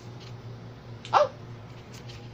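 A dog gives one short, sharp yip about a second in, its pitch dropping quickly, over a steady low hum in the room.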